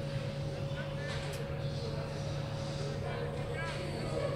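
Indistinct, distant voices of players and onlookers at a rugby match, none clear enough to make out, over a steady low hum.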